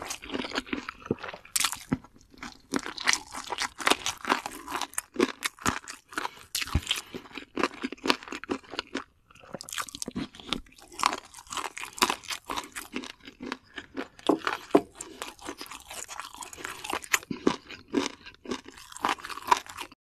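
Close-miked crunching and chewing of sauce-coated Korean fried chicken (yangnyeom chicken): many sharp crunches in quick succession with wet mouth sounds, easing briefly about nine seconds in.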